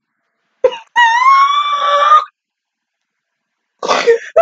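A woman's short gasp, then a high-pitched excited squeal held for about a second, slightly rising; another squealing outburst starts near the end.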